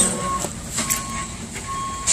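Warning beeper of a warehouse lift truck sounding a steady single-pitch beep, three times at a little under one beep a second, as the truck moves.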